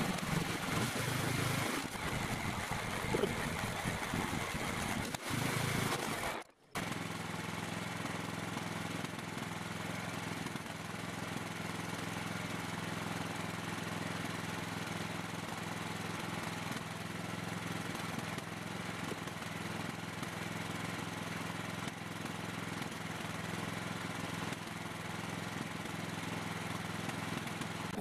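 Kohler 18 hp lawn tractor engine running steadily, with a brief dropout about six and a half seconds in.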